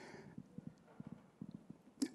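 Near silence: room tone with a few faint, short low ticks.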